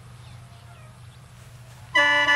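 Rice threshing machine running steadily at a distance, a low even drone, with faint short animal calls over it.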